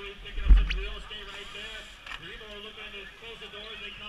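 Indistinct distant voices around a BMX start gate, with a single loud low thump on the microphone about half a second in.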